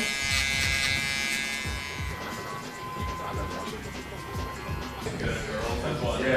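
Electric hair clippers buzzing steadily as they cut hair on the side of a client's head, the buzz fading after about two seconds.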